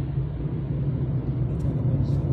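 Steady low rumble of a car driving on the road, engine and tyre noise heard from inside the cabin.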